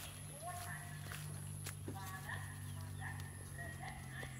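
Faint, indistinct voices in short snatches, with a few light clicks or knocks, over a steady low hum.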